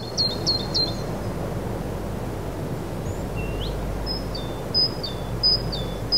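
Birds chirping over steady outdoor background noise. There is a quick run of four short chirps at the start and a single rising note about halfway. Near the end a two-note call, a high note stepping down to a lower one, repeats three times.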